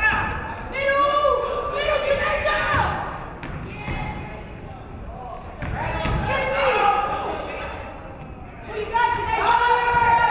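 Basketball game sounds in a large gym: a ball bouncing on the hardwood floor, with voices calling out in several stretches over it, echoing in the hall.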